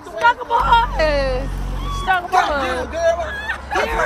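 Several people talking and laughing close to the phone, with a vehicle's low steady rumble underneath from about half a second in.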